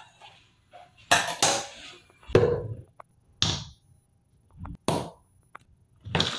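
Plastic skincare bottles and tubes set down one after another on a granite countertop: several separate knocks and short scrapes.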